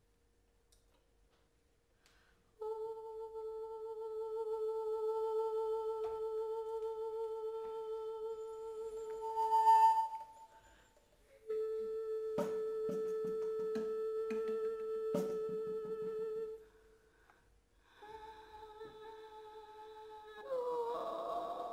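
Contemporary chamber music for bass flute, bass clarinet and female voice: long, slow held notes on nearly the same pitch, separated by short pauses. The first note comes in after about two and a half seconds of near silence and swells before it stops; a few sharp clicks fall during the second note.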